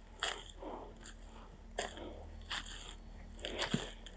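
Footsteps crunching through dry fallen leaves and twigs on a slope, about five steps at an uneven walking pace.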